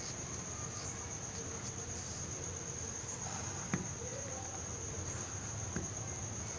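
Cricket trilling steadily on one high-pitched, unbroken note. Two faint ticks of a pencil against a ruler and paper come through, one a little past the middle and one near the end.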